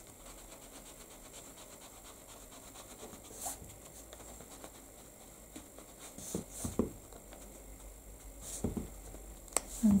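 Faint rubbing of a foam ink blending tool worked around the edges of a card, with a few soft taps and scuffs in the second half.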